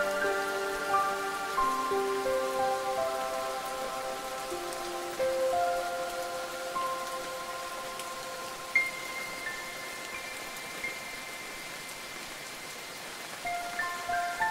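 Steady rain with ringing, chime-like notes held over it. The notes are dense at the start, thin out through the middle, and crowd in again near the end. A bright high note struck about nine seconds in stands out as the loudest moment.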